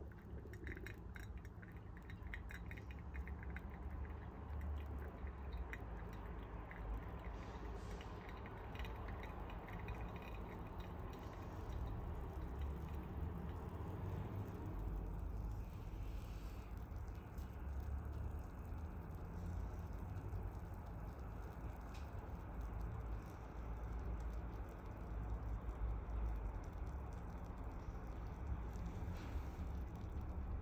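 Faint crackling of tiny bubbles popping in blooming coffee grounds in a paper-filter pour-over dripper, the crackle densest in the first few seconds, over a steady low rumble.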